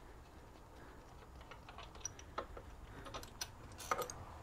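Faint scattered metal clicks and ticks of the threaded transmission dipstick on a Harley six-speed being unscrewed and drawn out of its hole. They start about a second and a half in and come thicker near the end, the loudest click just before it.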